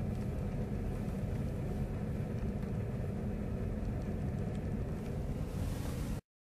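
Steady low rumble of a Ford Mondeo's running engine and road noise, heard from inside the cabin.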